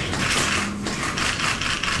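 Light applause from a small group: a steady run of irregular hand claps.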